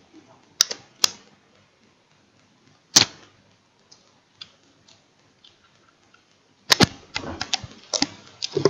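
Small plastic objects being handled on a wooden desk, clicking and knocking as they are picked up and set down: a few single sharp clicks in the first three seconds, then a quick run of clicks and light rattling near the end.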